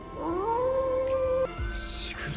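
A dog's single long howl in the anime's soundtrack: it rises in pitch, holds steady and cuts off suddenly about a second and a half in, over a sustained music score. The howl is the shikigami dog's call, given as a signal.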